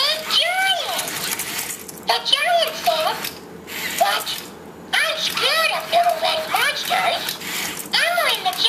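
Elmo Live robot toy talking in Elmo's high-pitched voice through its built-in speaker, in short phrases with a pause of a second or so about halfway through.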